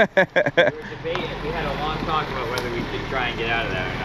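Indistinct talking over a steady low engine idle, with a few short sharp sounds in the first second. The idle comes from the tow truck that has just backed up the driveway.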